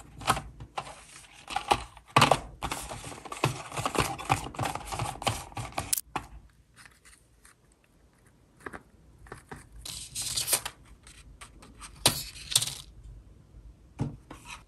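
Cardboard medicine boxes and a foil blister pack of tablets handled on a desk: crinkling, rustling and sharp clicks, thickest in the first six seconds, then sparser, with two short bursts of rustling near the end.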